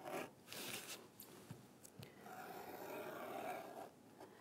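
Utility knife blade drawn through contact paper laid on mat board: faint scraping cuts, a short stroke at first and then a longer one from about two seconds in.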